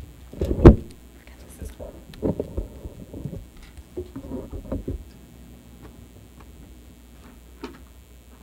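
Knocks and bumps picked up by a desk microphone as papers are signed on the table beside it: a loud, low thump about half a second in, then clusters of lighter knocks between about two and five seconds.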